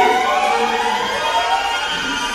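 String orchestra playing overlapping sliding pitches (glissandi) in the upper strings, several lines gliding at once, with one rising glide late in the stretch.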